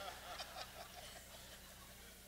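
Faint laughter from the congregation in a large hall, a scatter of short voice sounds that die away within about a second, over a low steady hum.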